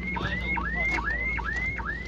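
Car alarm siren sounding: a rising electronic whoop repeated evenly, about three times a second, over a steady low hum.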